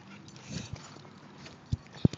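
A dog close by making a few short, separate sounds, including brief low thumps, the loudest near the end.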